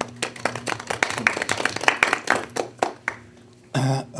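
A small group of people applauding with their hands around a meeting table. The claps are dense and uneven and die away about three seconds in.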